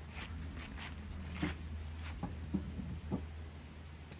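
Split firewood logs being set onto a stack: a handful of light, irregular wooden knocks and clicks over a steady low hum.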